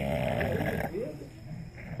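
Bulldog growling low and raspy over its bone, a snore-like rasp with a short rising note about a second in. It is a warning to keep away from the bone it is guarding.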